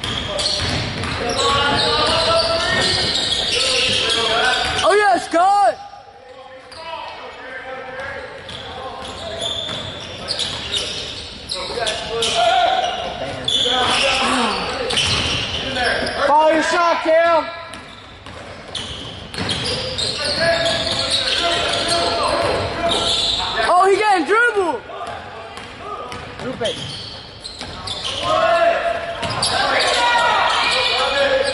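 Indoor basketball game with a ball bouncing on the hardwood court and shoes squeaking sharply a few times, with spectators' voices echoing in the gym throughout.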